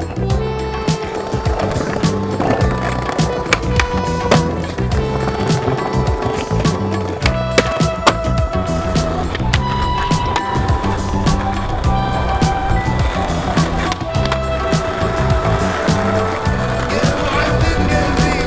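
Skateboarding under a music soundtrack: wheels rolling on concrete and paving, with repeated sharp clacks of the board's tail popping and the board hitting the ground and ledges during tricks.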